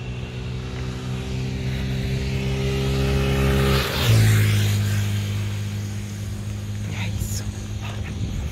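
A motor vehicle passing on the road: its engine hum and tyre noise grow louder, drop sharply in pitch about four seconds in as it goes by, then fade away.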